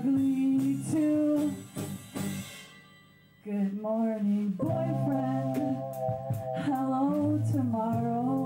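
Live rock band playing with a female singer holding long notes. The music drops away briefly about three seconds in, then the band comes back in with drum hits and sustained tones.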